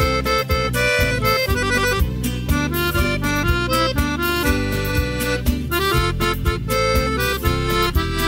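Instrumental break of a Brazilian song: an accordion plays the melody over a steady bass beat, with no singing.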